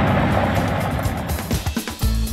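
Road and engine noise inside a moving car fading out while music with a beat fades in.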